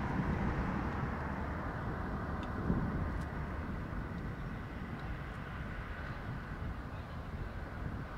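Steady outdoor background noise: a low rumble and hiss with no distinct event, slowly fading.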